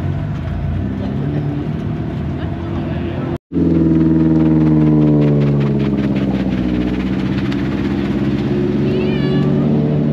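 Nissan S13 drift car's engine idling. After a brief drop-out about a third of the way in, it runs louder at low revs as the car pulls away.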